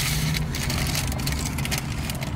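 Crunchy fried taco shells being bitten and chewed, with paper wrappers crinkling, a dense run of small cracks and crackles. Underneath is a low steady hum from the car.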